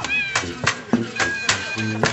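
High-pitched squeaking in short gliding bursts over a regular knocking, about three knocks a second, from a squeaky bed in a camp skit.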